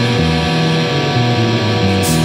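Distorted electric guitar on a Killer guitar tuned to about A=431 Hz, playing sustained rock chords over a band backing track with a moving bass line.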